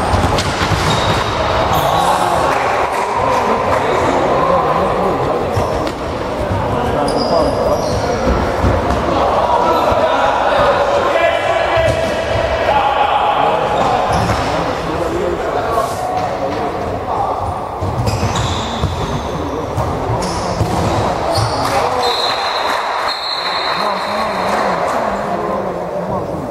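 A futsal ball being kicked and bouncing on a wooden sports-hall floor, with scattered sharp thuds, under players' shouts, all echoing in a large hall.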